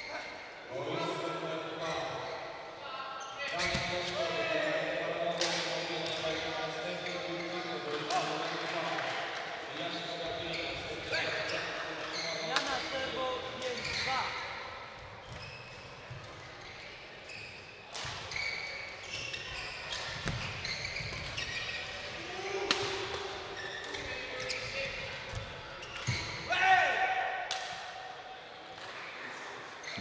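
Badminton rackets striking a shuttlecock in a large sports hall: sharp hits at irregular intervals, mixed with voices talking.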